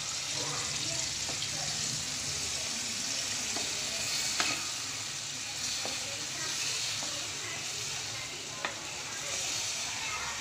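Chicken and chopped tomatoes sizzling in oil in a frying pan while a spatula stirs them, with a few sharp clicks of the spatula against the pan.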